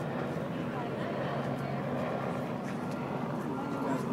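A steady, low engine drone with voices chattering in the background.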